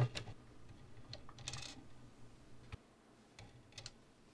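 A few scattered light clicks and taps of 3D-printed plastic parts being handled and fitted together, with one brief scrape about a second and a half in.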